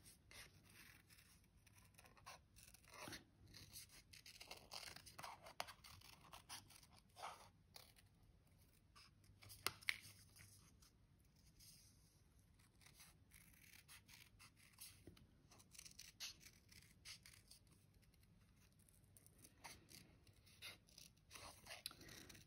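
Faint, irregular snips of small craft scissors cutting around a printed paper shape, with one louder click about ten seconds in.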